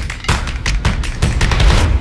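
Logo intro sting: a rapid run of sharp percussive hits, about five a second, over a deep bass rumble, growing louder toward the end.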